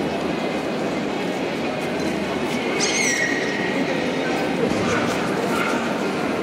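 Steady hubbub of many voices in a large hall, with a single high-pitched dog yelp about halfway through.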